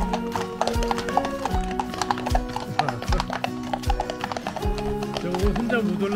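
Horses' hooves clip-clopping on a tarmac road as several ridden horses walk past, under background music with sustained notes and a steady low beat.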